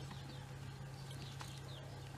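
Faint outdoor background in a pause between words: a steady low hum, with a few faint bird chirps near the end.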